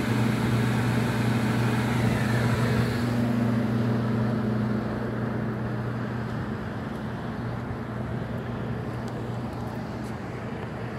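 Rooftop package air-conditioning unit running: a steady low hum over fan noise, growing fainter after about five seconds.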